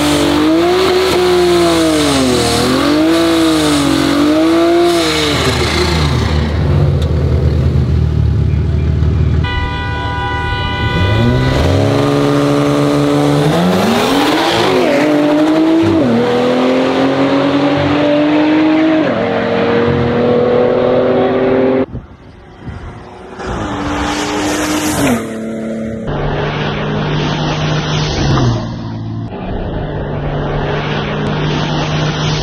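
Two modified turbocharged cars, an Infiniti Q50 with its twin-turbo VR30 V6 and a BMW 440i with its turbocharged B58 inline-six, revving up and down repeatedly at the start line, then launching and accelerating hard through several gears, the engine pitch climbing with each gear and dropping at each shift. A brief high steady tone sounds about ten seconds in, and the run cuts off abruptly a little after twenty seconds, followed by quieter engine sound.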